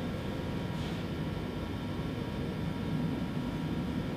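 Steady room noise: a low hum and hiss of ventilation running, with no distinct events.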